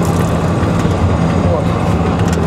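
Steady engine and road drone heard inside the cabin of a moving GAZ Gazelle minibus, a constant low hum.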